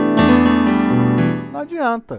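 Electronic keyboard playing slow sustained chords in C major, with a fresh chord and bass note struck near the start and another about a second in, then fading out. A man's voice comes in briefly near the end.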